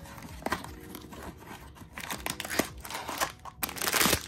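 Paper cardboard box flaps being pulled open, then a plastic blind-box bag crinkling and tearing open, in scattered rustles and crackles that are loudest near the end.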